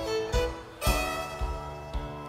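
Live contra dance band music: fiddle, keyboard and percussion playing together, with low drum thumps on the beat and a strong new phrase starting about a second in.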